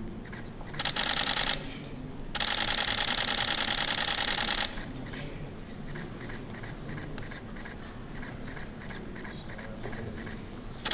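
Press photographers' camera shutters firing in rapid bursts: a short burst about a second in, then a longer one of a couple of seconds, followed by quieter room background.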